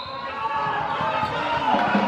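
Sounds of a youth korfball game in a sports hall: players' and spectators' voices calling across the hall, with scattered short knocks from the ball and players' feet on the court floor.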